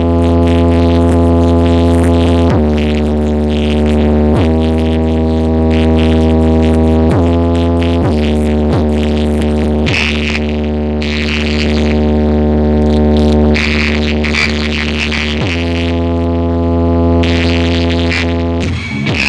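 Electronic music played very loud through a truck-mounted car-audio speaker wall: long held low bass-synth notes that jump to a new pitch every second or two.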